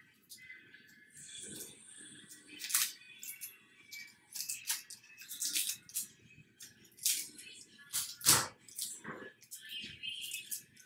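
Irregular clicks, taps and knocks of things being handled on a kitchen counter, the loudest knock about eight seconds in.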